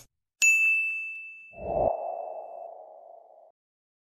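Subscribe-button animation sound effects: a bright bell-like ding about half a second in that rings out and fades over about two seconds. At about a second and a half a low thud follows, with a lower tone that fades away by three and a half seconds.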